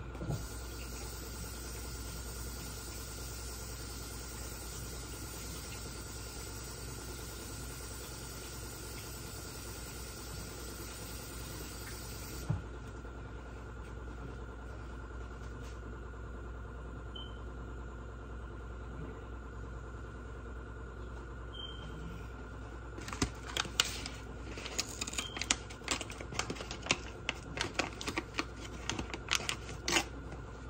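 Steady low hum with a high hiss that stops suddenly about twelve seconds in. In the last seven seconds comes a run of irregular sharp clicks and knocks, like kitchen things being handled.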